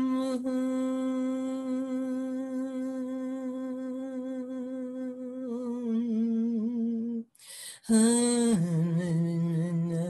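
A woman humming one long, steady note, then a quick breath in about seven seconds in. A new hummed note follows, slides down to a lower pitch and holds: meditative vocal toning.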